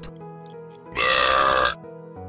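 A loud, ear-splitting cartoony 'derp' vocal sound effect, a single blurt of just under a second with a slightly falling pitch, coming about a second in over quiet background music.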